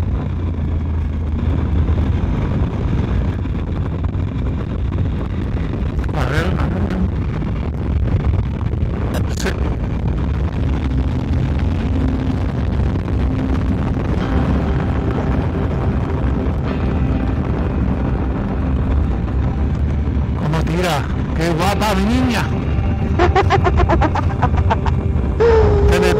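Motorcycle riding at road speed: a steady low engine and wind rumble, with a couple of short sharp clicks early on.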